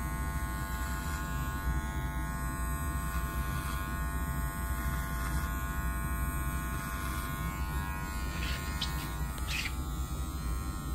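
Cordless Wahl Magic Clip hair clipper running with a steady buzz as it tapers the hair at the nape freehand, with two short sharp ticks near the end.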